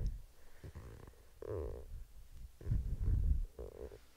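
Breath and movement picked up by a close headset microphone: three low, muffled puffs and rumbles, the longest about three seconds in.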